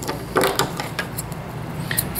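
A few faint clicks and handling sounds of small hand tools being put down and picked up on a wooden workbench, over a low steady room hum.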